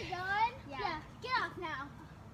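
Children talking and calling, quieter and farther off than the voices just before.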